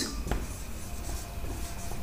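Marker pen writing on a whiteboard: quiet scratching strokes as a short note is written.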